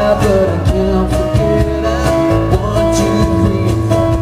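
Live unplugged band performance: a male voice singing long held notes over acoustic guitar.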